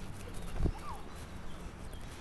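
Quiet outdoor ambience with a low steady rumble and a single low thump just after half a second in.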